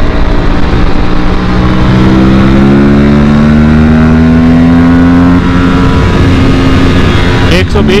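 Aprilia RS 457 parallel-twin engine pulling hard under full throttle in third gear, its pitch climbing steadily as the bike accelerates, then levelling off and easing a little past halfway.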